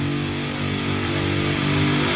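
Heavy metal song intro: a single sustained, distorted guitar chord droning and slowly growing louder.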